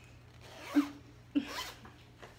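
Zipper of a hooded jacket being pulled up, in two quick strokes: the first rises to a sharp peak a little under a second in, the second follows about half a second later.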